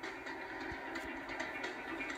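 Television audio: a steady, noise-like sound effect under a 'Tornado Alert' title graphic, played through the TV speaker and picked up in the room.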